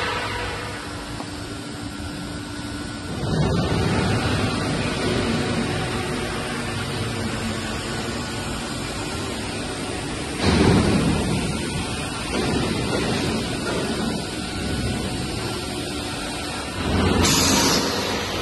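Machinery of a 110 mm CPVC pipe extrusion line running: a steady mechanical rush with constant hum tones. The noise swells louder about three seconds in, again about ten and a half seconds in, and near the end.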